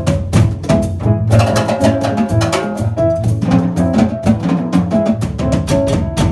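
Live jazz band playing an instrumental passage of an Afro-Peruvian song. A drum kit and cajón keep up a busy, rapid rhythm under upright double bass, piano and guitar.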